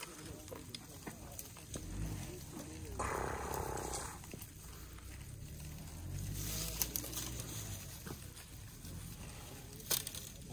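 Elephants rumbling close by: low, deep rumbles about two seconds in and again in a longer stretch from about five and a half to eight seconds. A short breathy rush comes about three seconds in, and a sharp click near seven seconds.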